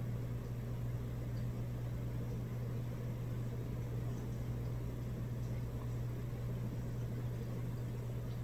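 Steady low hum with a faint even hiss of background room noise, unchanging throughout, with no distinct sounds.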